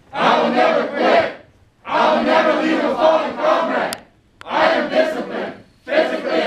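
A formation of service members chanting in unison, loud, in three phrases with short pauses between them.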